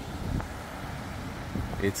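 Wind blowing across the microphone, a steady rumbling noise with no distinct events.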